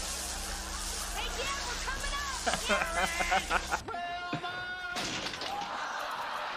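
Sitcom soundtrack: a steady electric buzz from an electrocution gag, with a man's yelling over it. About four seconds in it cuts off suddenly to a short held tone, followed by more voices.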